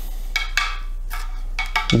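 Two Head Radical tennis rackets knocking frame against frame: a string of light, irregular clacks, each with a brief ringing.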